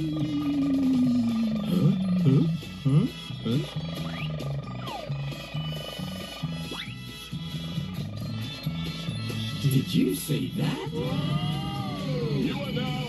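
Animated trailer soundtrack played through computer speakers: music with a steady low beat and cartoon sound effects, opening with a long falling tone and with several swooping rise-and-fall sounds near the end.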